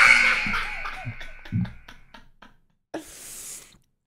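A man chuckling in a few short bursts over a ringing tone that fades away over about two seconds, then a brief hiss near the end.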